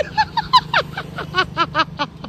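A high-pitched voice rattling off short syllables, about six or seven a second, each dipping in pitch, over a steady low hum.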